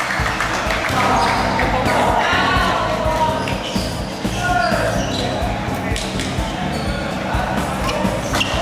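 Busy badminton hall: a stream of sharp racket-on-shuttlecock hits from the courts, with voices of players and spectators echoing in the large hall.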